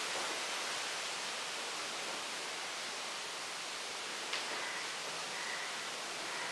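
Steady hiss of room and recording noise, with one faint tap of chalk on a blackboard about four seconds in and a faint, thin chalk squeak shortly after.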